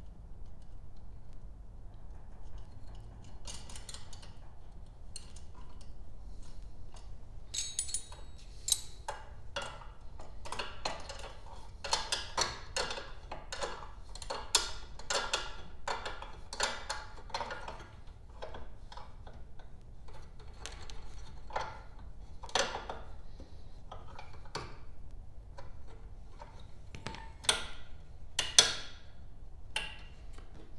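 Irregular small clicks and rattles of hands working wires and small metal hardware at a riding mower's battery terminal, coming thick in the middle with two sharper clicks near the end.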